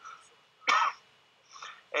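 A man's single short cough, about two-thirds of a second in.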